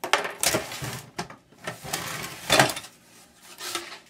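Plastic and circuit-board parts of a dismantled flat-screen computer monitor clattering and knocking as they are handled, in several irregular bursts with the loudest clack about two and a half seconds in.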